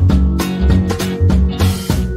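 Instrumental background music with a steady drum beat.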